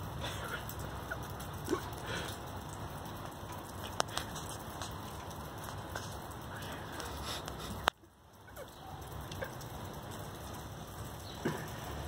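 Faint, steady hiss of light rain, with a few small clicks. The sound cuts out suddenly for a moment about eight seconds in, then returns.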